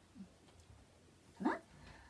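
Quiet room tone broken, about one and a half seconds in, by one short rising voice-like sound.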